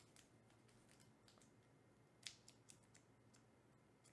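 Near silence with faint, irregular small clicks and ticks from handling, the loudest a little after two seconds in.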